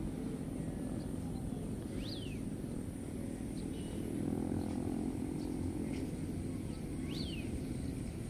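Steady low outdoor rumble of distant motor vehicles, with an engine hum swelling about four seconds in, and a few short high bird chirps, two of them quick up-and-down sweeps.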